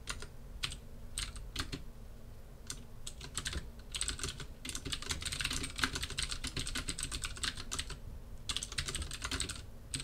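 Typing on a computer keyboard: irregular keystrokes, scattered at first, then fast runs of key presses in the middle and again near the end.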